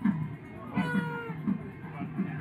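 Men's voices chanting in short low phrases. About a second in, a brief high-pitched wavering cry-like note rises above them.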